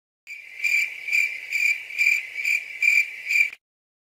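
Insect chirping: a steady high trill that swells about twice a second, stopping abruptly just before the end.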